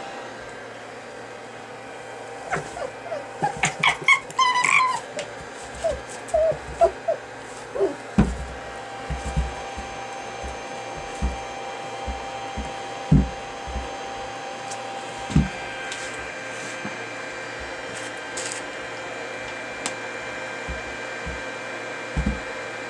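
Red fox playing with a knotted rope toy on disposable floor pads: rustling and scattered soft thuds, with a cluster of short high squeaks about four seconds in and a few lower falling squeaks a little later, over a steady electrical hum.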